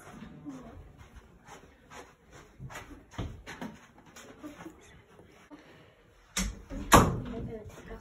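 Scattered light knocks and rustles of handling and movement, then two sharp knocks about half a second apart near the end, the second the loudest.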